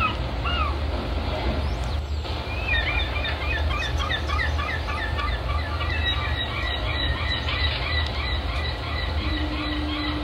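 A flock of small birds calling: a dense, continuous run of short chirps over a steady low rumble. A low steady tone comes in near the end.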